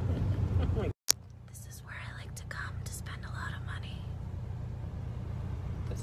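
Steady car-cabin hum from the engine and tyres while driving, cut off briefly by a dropout and a sharp click about a second in, then going on more quietly, with faint whispered voices over it.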